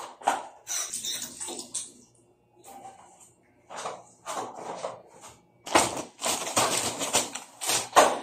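Hands being washed with water: irregular splashing and rubbing in several short spells, the longest and loudest near the end.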